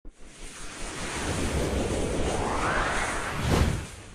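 Logo-intro sound effect: a swelling rush of noise over a deep rumble, with a sweep rising in pitch, ending in a sharp whoosh hit about three and a half seconds in.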